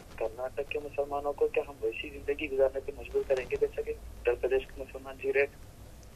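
Speech only: a phone-in caller talking over a telephone line, the voice thin and quieter than the studio microphone.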